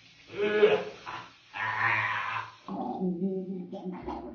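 A person's voice making two drawn-out, wordless vocal sounds, then a steady held hum for about the last second.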